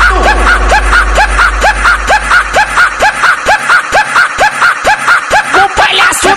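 A short laugh sample chopped and looped in a Brazilian funk montage, repeating about three times a second as a rhythmic hook. It runs over a deep bass tone that drops out about halfway through.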